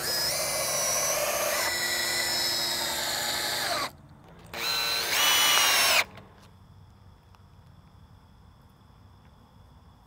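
Cordless drill driving a wood screw through a treated two-by-four backer rail into a four-by-four post: one long run of about four seconds, its whine stepping slightly up in pitch, then a second, shorter run of about a second and a half before it stops.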